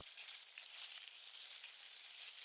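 Faint, steady hiss with no distinct events: the background noise floor of the soundtrack.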